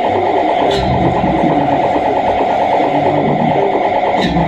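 Live experimental electronic noise music: a dense, sustained drone with a fast fluttering texture, under wavering tones that slide up and down in pitch, over a low rumble.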